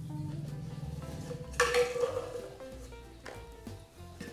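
Plastic stacking rings clattering together in one loud knock about one and a half seconds in and a lighter knock near the end, over steady background music.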